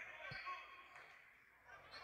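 A basketball bouncing once on a hardwood gym floor about a third of a second in, with faint voices of players around it.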